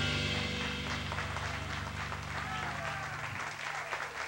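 Audience applauding at the end of a live jazz tune while the band's final chord rings on, dying away a little over three seconds in.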